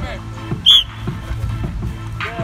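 A single short, sharp whistle blast about two-thirds of a second in, over background music with steady held notes and scattered voices.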